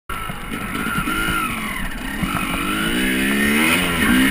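KTM 250 EXC enduro motorcycle engine running while riding, its pitch dipping and then climbing steadily from about halfway through as it accelerates, with wind rushing over the chest-mounted microphone.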